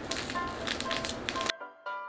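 Background music throughout. Under it, for the first second and a half, a foil sachet of cheese powder is shaken and crinkled over a bowl of noodles. The room sound then cuts off suddenly, leaving only the music.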